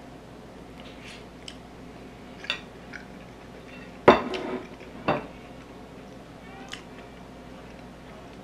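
A metal fork and dishes clinking and knocking a few times, mostly light, with one sharp knock about four seconds in that rings briefly and another about a second later.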